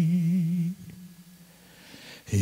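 A man's solo voice, unaccompanied, holding a long note with an even vibrato. The note ends about three-quarters of a second in and is followed by a pause before the next phrase.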